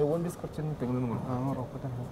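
A man speaking in conversation.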